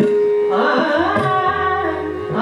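Hindustani classical female vocal in raag Bairagi Bhairav, sung in gliding, ornamented phrases over a steady held harmonium note, with tabla accompaniment. A deep tabla note sets in about a second in.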